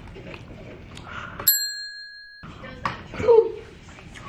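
A single clear bell-like ding about a second and a half in, ringing steadily for about a second while all other sound drops out, as an added sound effect. Later comes a brief vocal sound from the woman eating, the loudest moment, over low rustling.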